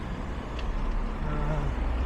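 Steady road traffic on a busy four-lane road: cars passing with engine and tyre noise, and one engine note rising a little past the middle.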